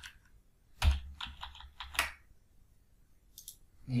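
Typing on a computer keyboard: a sharp keystroke about a second in, a quick run of key clicks after it, and a couple of faint taps near the end.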